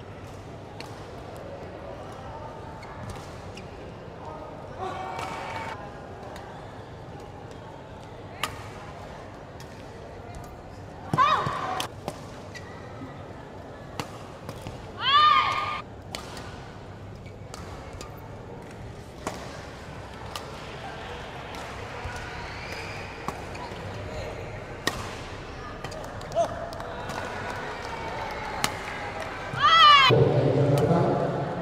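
Badminton singles rally in an indoor sports hall: sharp racket strikes on the shuttlecock and players' footwork on the court, over a steady murmur of hall noise and distant voices. Two louder, briefly sliding pitched sounds stand out, about a third and about half of the way through.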